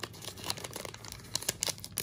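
2021 Topps Gypsy Queen card pack wrapper being torn open and crinkled by hand: an irregular run of small crinkles and crackles, with a few sharper ones about half a second in and near the end.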